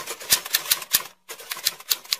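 Typewriter key strikes used as a sound effect for on-screen text being typed out: a fast, uneven run of sharp clicks, about five a second, with a brief break a little past the middle.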